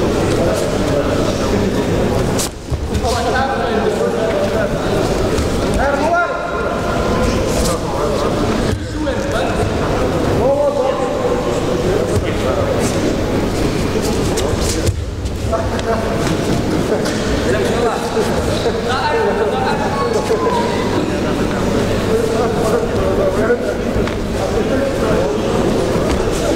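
Sports-hall ambience during a judo bout: scattered voices of people in the hall talking and calling out, coming and going, over a steady low hum.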